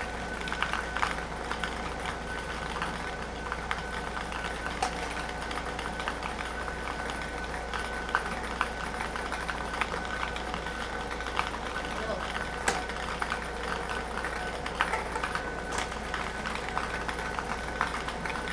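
An air-blown lottery ball machine running: a steady blower sound with a constant high whine, and the plastic balls ticking and clattering against the clear dome.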